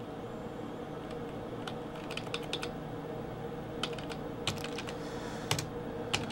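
Computer keyboard keys tapped in a few irregular, scattered clicks over a steady faint hum.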